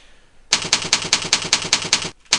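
Computer keyboard typing: a quick, even run of keystroke clicks, about seven a second, starting about half a second in, as a name is typed into a text field.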